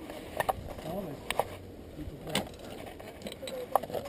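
Mountain bike rolling slowly over a rooty dirt trail: a low rumble with a handful of sharp, irregular knocks and rattles from the bike.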